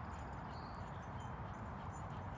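Steady, fairly quiet outdoor background noise with light, scattered high ticks and jingles through it.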